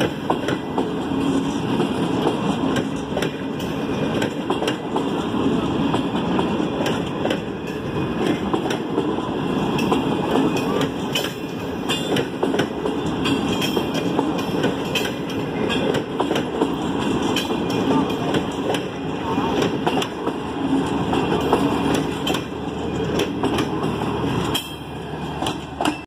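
Green Line express passenger coaches rolling past close by, the wheels clattering over the rail joints in a steady run of knocks over the rumble of the running gear. The sound drops slightly near the end as the last coach passes.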